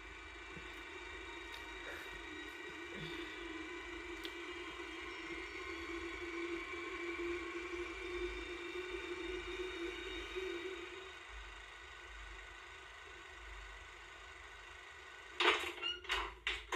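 A low, sustained drone from a horror short film's soundtrack, with several held tones, swelling slowly and then fading out about eleven seconds in, leaving faint room tone.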